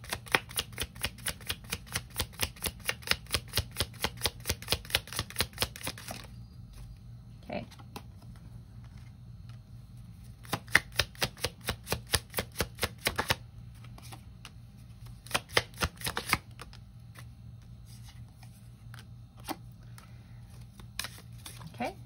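A deck of oracle cards being shuffled by hand: a quick, even run of card flicks, about five a second, for the first six seconds, then two shorter bouts of shuffling further in, with only faint card handling between them.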